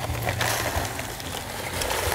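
Dry fast-setting concrete mix pouring out of a paper bag into a post hole: a steady hiss of falling powder and gravel.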